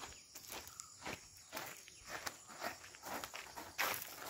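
Footsteps on a packed dirt yard, a brisk walk at about two steps a second.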